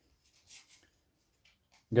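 Faint brief rustle of a stack of Pokémon trading cards being slid in the hands, about half a second in.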